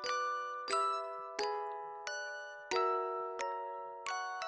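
Instrumental lullaby in bell-like chiming tones: slow struck notes, each ringing out and fading, about one every 0.7 seconds with a longer pause midway.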